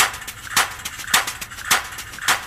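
Sharp, woody knocks in a steady beat, a little under two a second, with lighter ticks between them: the percussion intro of an a cappella country song, before the voices come in.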